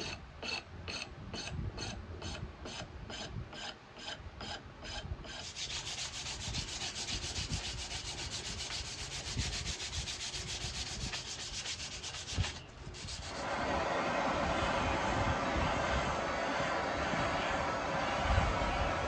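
Hand saw cutting through a wooden tool handle: even strokes about three a second, then quicker, continuous sawing. About thirteen seconds in, a handheld gas torch on a yellow cylinder takes over with a steady hiss as its flame plays over the wooden handle.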